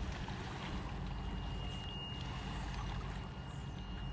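River water washing against the bank, over a steady low rumble, with a faint steady high-pitched tone from about half a second in.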